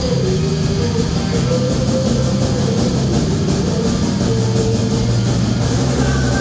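Live rock band playing at full volume: electric guitars, bass and drum kit, with held guitar notes over a steady bass line and a fast, even cymbal pattern.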